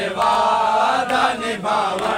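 Men's voices chanting a noha, a Shia mourning lament, in long drawn-out sung lines.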